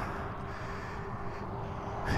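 Steady low background noise with a low rumble and a faint steady hum, with no distinct event.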